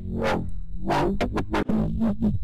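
Neuro bass samples played one after another: a quick run of short, heavily processed synthesized bass hits, about three a second, over a sustained low end. These are crazy bass sounds with a lot of tone and movement.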